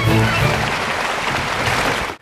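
A large audience applauding, with the orchestra's last chord dying away in the first half second.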